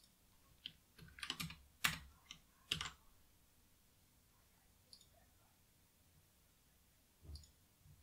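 Faint computer keyboard keystrokes, a scattered handful of clicks bunched in the first three seconds with one more near the end.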